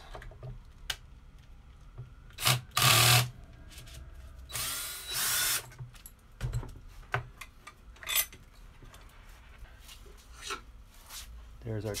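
Cordless drill-driver backing out the steel neck-plate screws of a bolt-on Telecaster neck in a few short runs in the first half, followed by scattered clicks and knocks as the screws and neck are handled.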